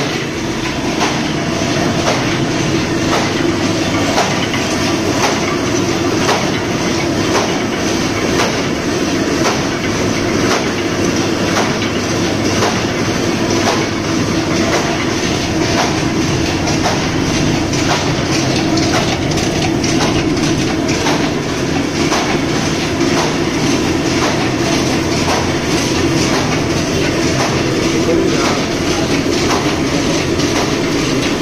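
Paper reel-to-sheet cutting machine running steadily, with a regular mechanical knock about once a second over a continuous rumble.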